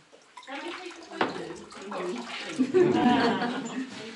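Water splashing and gurgling in and around a ceramic jug held over a bowl of water, with a single sharp knock about a second in.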